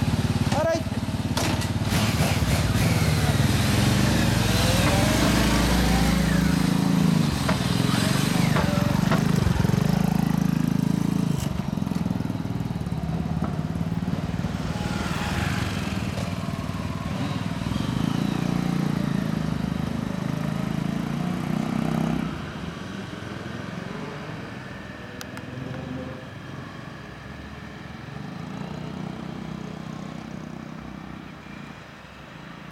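A group of motorcycles, among them a Kawasaki Ninja ZZR1400, running and being revved as they pull away one after another. Their engine sound drops off sharply about two-thirds of the way through and fades as the bikes ride off.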